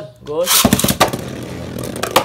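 Beyblade Burst tops ripped out of their launchers about half a second in, a loud rapid whirring rattle, then the two tops spinning and scraping around the plastic stadium with a few sharp knocks.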